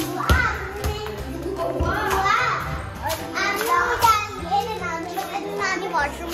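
A young girl's voice chattering and calling out as she plays, over background music.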